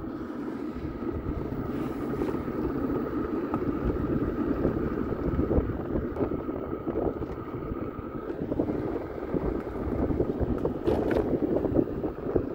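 Wind rushing over the microphone and tyre rumble on rough asphalt while riding an electric scooter. A faint steady whine runs along with it and stops about eight seconds in.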